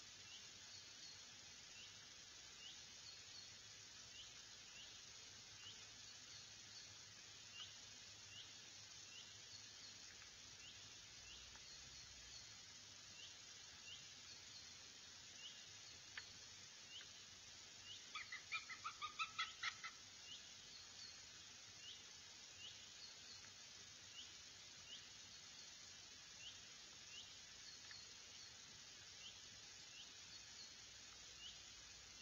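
Faint bird calls: short rising chirps repeat about once a second. Past the middle comes a brief rapid series of about ten louder, sharper calls.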